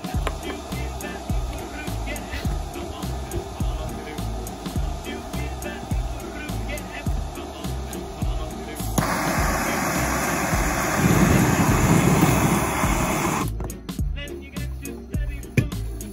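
Background music with a steady beat. About nine seconds in, a homemade hair-dryer jet engine starts running with a loud, steady rushing noise that cuts off suddenly about four seconds later.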